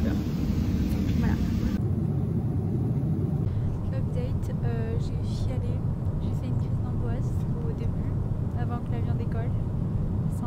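Steady low rumble of airliner cabin noise, with faint speech over it from about four seconds in.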